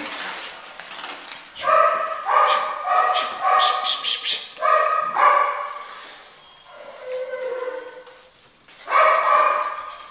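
A six-week-old Belgian Malinois puppy barking in high-pitched yaps, a quick run of them from about two to five seconds in. A quieter, drawn-out whining cry follows, and the yapping starts again near the end.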